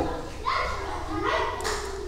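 A pause in a man's sermon, filled by faint, high-pitched voices calling briefly in the background over a low steady hum.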